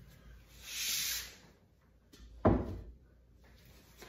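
Pottery being handled on a wooden workbench: a short rustling hiss, then one sharp knock about two and a half seconds in, as a piece is set down.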